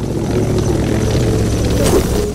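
A loud, steady mechanical roar with a low, fast pulsing and a faint steady tone over it, with a short swish near the end.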